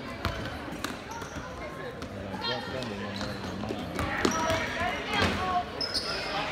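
A basketball bouncing on a hardwood gym floor as it is dribbled, with sneakers squeaking briefly in the second half and spectators' voices echoing in the hall.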